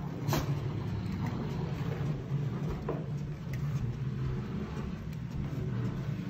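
A Shiba Inu's body sliding over hallway carpet as it is pulled along on its leash: a continuous, uneven low rubbing rumble, with a few light clicks.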